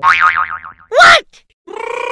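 Cartoon-style comedy sound effects: a springy, wobbling boing whose pitch warbles up and down, then a short loud tone about a second in, then a steady held tone starting near the end.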